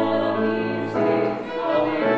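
A vocal trio of one man and two women singing a sacred anthem in harmony, accompanied by violin and cello; the chord changes about a second in.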